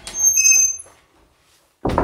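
Old wooden plank door swinging open on its hinges with a high, squealing creak, then a sharp thump just before the end.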